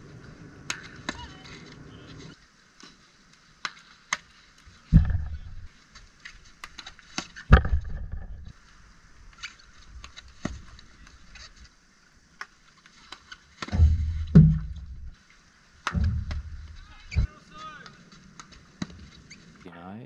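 Field hockey training shots on goal: sharp clacks of sticks striking the hard ball, and four heavy thuds of the ball hitting close to the goal, about five, seven, fourteen and sixteen seconds in, over a steady hiss.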